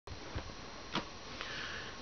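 Steady recording hiss with three brief, soft noises, the loudest about a second in, from a person moving about close to the camera.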